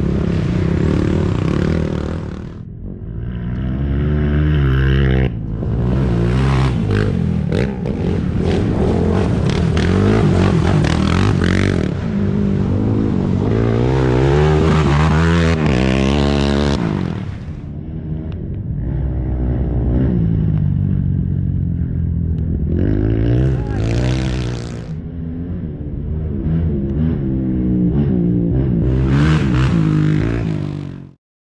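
Racing quad ATV engines revving hard as the quads pass on a dirt track. The pitch climbs and falls again and again with throttle and gear changes, loud throughout, and the engine note breaks off and changes abruptly a couple of times.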